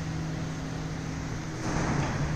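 A steady low machine hum over a constant background hiss, with a brief rustling swell of noise near the end.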